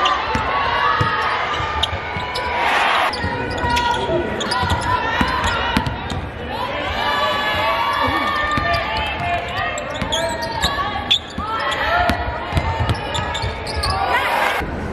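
A basketball bouncing on a hardwood court amid the live sound of a game in a large gym, with players' and spectators' voices throughout. About three seconds in there is a brief louder rush of noise.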